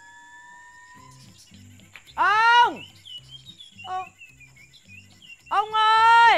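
A woman's loud, drawn-out call, falling in pitch, about two seconds in and again near the end, over soft background music with a low repeating beat and faint bird chirps.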